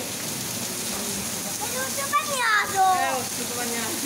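Heavy downpour hitting a paved street, a steady hiss of rain and running water. A person's voice speaks briefly about halfway through.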